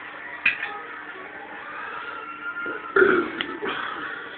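A man belches, loudest about three seconds in, over a quiet room.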